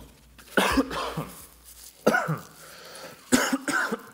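A man coughing several times into a tissue, in separate loud coughs spread over the few seconds.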